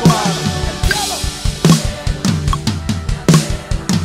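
Live drum kit playing a steady groove: kick drum and snare hits with Meinl cymbal crashes about every second and a half, part of a full band's music.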